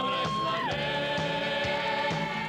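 Live band music from an up-tempo Mexican medley: a long held note that steps down slightly partway through, over a steady beat of about two strokes a second.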